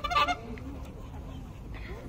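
A dog gives one short, harsh bark at the very start.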